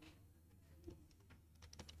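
Near silence with a few faint clicks and taps of a stylus writing on a tablet, one near the middle and a quick run near the end, over a low steady hum.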